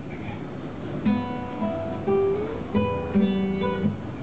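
Acoustic guitar: a few chords strummed and picked, each left ringing, starting about a second in.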